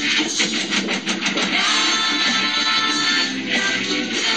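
Rock song from a Czech garage-punk band: strummed distorted electric guitar over drums, loud and continuous.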